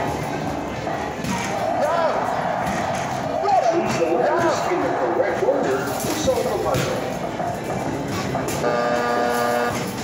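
Arcade basketball machine (Skee-Ball Super Shot) in play: basketballs are thrown and knock about the machine amid arcade music and voices. Near the end a steady electronic buzzer sounds for about a second as the timer runs out, signalling game over.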